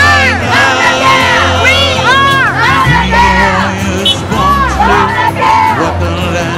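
A crowd of protesters shouting and cheering, with repeated rising-and-falling shouts, over a song with steady bass notes played through a sound system.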